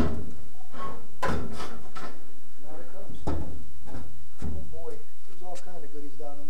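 Sheet-metal fuel tank of a 1943 Willys MB being lifted and worked out of its well in the body tub, knocking and scraping against the tub in a series of hollow bumps.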